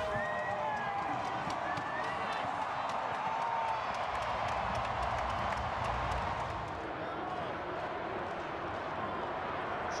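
Large stadium crowd: a steady hubbub of many voices with scattered shouts and clapping.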